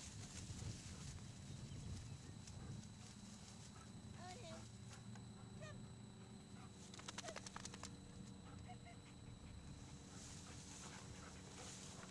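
A few faint, short animal calls rising and falling in pitch, grouped a little before the middle, over a low steady rumble; a quick run of clicks follows.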